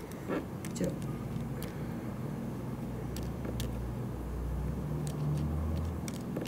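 Low background rumble that swells toward the end, with a few faint, scattered clicks.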